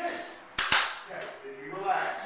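Sharp knocks from a scuffle on the floor against a glass door, two close together about half a second in and a lighter one about a second in, amid a man's shouts.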